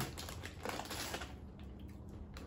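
Faint scattered clicks and crackles from snacking on wasabi Doritos: the chip bag being handled and chips being crunched.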